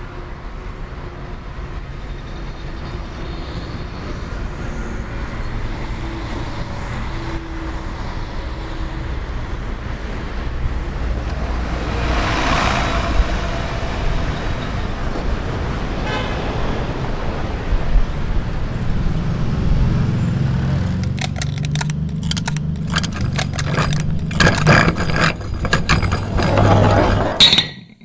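Street traffic noise, a steady wash of passing vehicles, with a louder swell about halfway through and a run of sharp clicks and clatter near the end.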